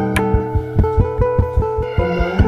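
Instrumental neotango music: guitar playing a quick, even run of plucked notes over a low sustained bass, with a sharp tick about a fifth of a second in.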